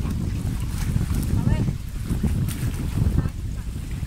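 Wind rumbling and buffeting on the microphone by a choppy lake, with faint voices in the background.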